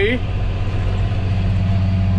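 Tractor engine heard from inside the cab: a steady low drone.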